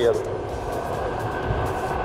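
Yokamura i8 Pro electric scooter rolling at a steady cruise-control speed: wind and tyre rumble with a faint, steady high whine from its hub motor.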